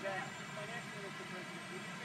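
A faint, distant voice talking, a reporter's question picked up off-mic, over a steady low mechanical hum.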